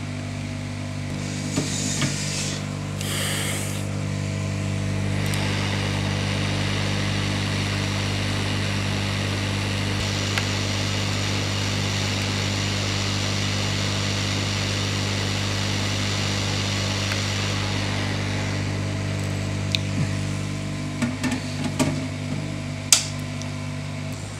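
Hot air rework station blowing: a steady motor hum under a rush of hot air, used to desolder a shorted, burnt MOSFET from a laptop motherboard. The airflow drops away about three seconds before the end, followed by a few light clicks.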